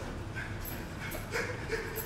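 A person whimpering in short, pitched cries, about four of them spread through two seconds.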